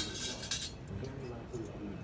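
Metal serving utensils and cutlery clinking against dishes at a buffet: one sharp clink right at the start that rings briefly, then lighter clinks, over a faint murmur of voices.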